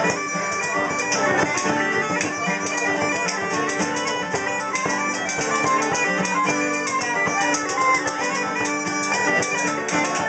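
Uilleann pipes playing a fast traditional Irish reel, the chanter's quick ornamented melody over steady drones, with a bodhrán beating along.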